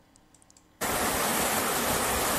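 Stream water rushing down a sloping rock slab: a steady rushing noise that starts suddenly just under a second in, after near silence.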